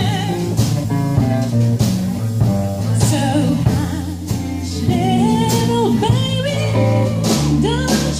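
Live jazz band: a woman singing into a microphone over electric bass guitar and drum kit, her voice most prominent in the second half.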